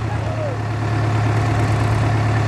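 Sonalika DI 750 tractor's diesel engine running with a steady low drone, with a brief faint voice near the start.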